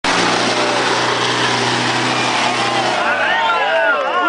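Off-road 4x4 engine held at high revs with tyres spinning in loose dirt and rock, a steady loud roar. About three seconds in the engine eases off and several people start shouting.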